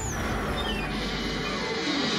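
Cartoon sound effect of a defeated robot powering down: a high whine falling in pitch over the first second, then a steady hiss as smoke rises from it.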